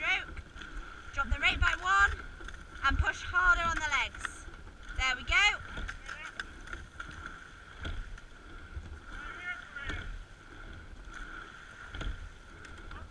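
A sculling boat under way: water rushing past the hull and wind on the boat-mounted microphone, with a few sharp knocks from the oars and rigging. Over it a voice calls out loudly in the first half.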